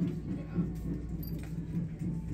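Drums being played outside the building, heard muffled indoors as a low, steady rumble.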